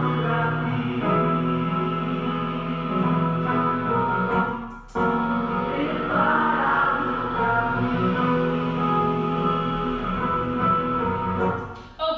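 Recording of a choir singing a slow, gentle gospel song in sustained, held notes. The sound dips briefly just before five seconds in, then the singing comes straight back.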